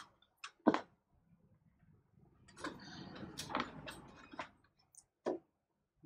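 Hands handling cables inside a PC case: a few small sharp clicks, then a couple of seconds of soft rustling and tapping about midway, and one more click near the end.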